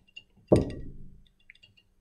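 A single sharp knock about half a second in, with a short ringing tail, as the glass distillation apparatus and its retort-stand clamps are handled; a few faint clicks follow.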